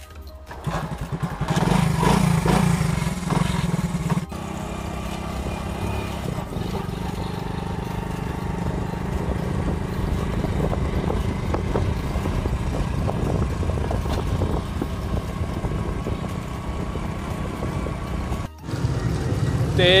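Motorcycle engine running while riding along a road, with wind and road noise, steady apart from two abrupt breaks about four seconds in and near the end.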